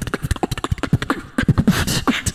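Live beatboxing into a handheld microphone: a fast run of kick-drum sounds with sharp snare and hi-hat hits, easing off briefly a little past a second in.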